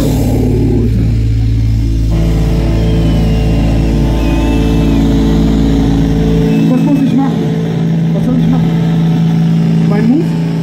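Electric guitars and bass left ringing through the stage amplifiers between songs, a steady drone with no drums. A held chord joins about two seconds in, and the deep bass note cuts out about two-thirds of the way through, leaving the chord sounding on.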